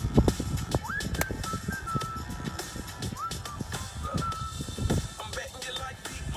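Background music with a melody line throughout, and a single sharp click about a second in: an iron striking a golf ball on a fairway approach shot.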